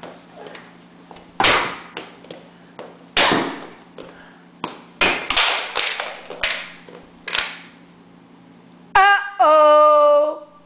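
A toddler whacking a plastic childproof doorknob cover with a book, about six sharp knocks spread over several seconds, until the cover breaks off the knob. Near the end a child's loud voice calls out.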